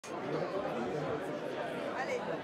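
Indistinct chatter: several people talking at once, with no one voice standing out.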